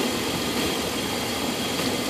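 Dodge Ram 1500 pickup's engine idling steadily, heard under the open hood.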